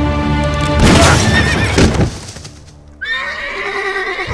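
A horse whinnies loudly about a second in, over a film's music score. The music drops away briefly and comes back with a new held tone near the end.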